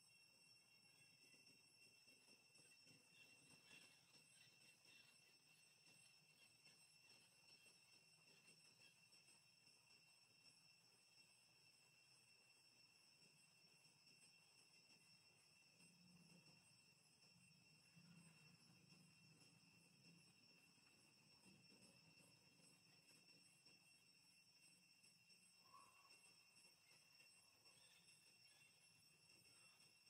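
Near silence: faint background with a steady high-pitched whine.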